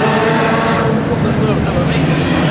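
Steady vehicle engine noise with indistinct voices mixed in.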